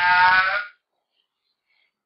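A man's voice holding one long, steady syllable that breaks off under a second in, followed by silence.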